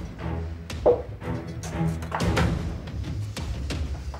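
Background music, with a few sharp knocks of a knife on a wooden cutting board in the last second.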